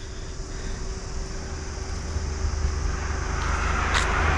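A car approaching along the road, its engine and tyre noise growing steadily louder.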